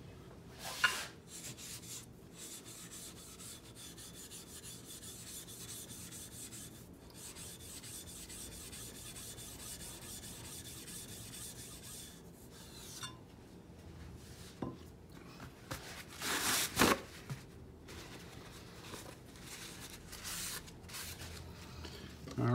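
A diamond plate rubbed back and forth over a wet waterstone, a steady gritty scraping as the stone's face is flattened and cleaned. Two louder brief sounds break in, one about a second in and one about three-quarters of the way through.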